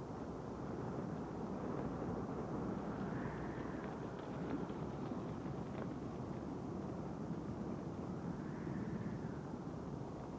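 Hooves of several galloping horses, heard as a steady, dense rumble with no distinct beats.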